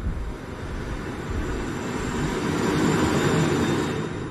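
Film sound design: a muffled, rumbling roar of noise that swells to its loudest about three seconds in and then begins to fade. It stands for the dulled hearing of a man deafened in a shootout.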